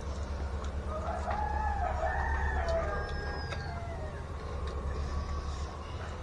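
A rooster crowing once, one long call starting about a second in and lasting roughly two and a half seconds, over a steady low hum.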